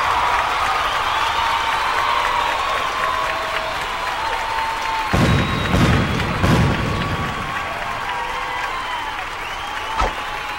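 Crowd applause and cheering, steady throughout, with a few heavy thuds about five to seven seconds in.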